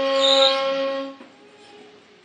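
Ney, the Persian end-blown reed flute, holding one long note that dies away a little over a second in, leaving a faint pause.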